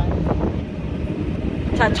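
Low, uneven rumble of wind buffeting the microphone, with faint voices in the background.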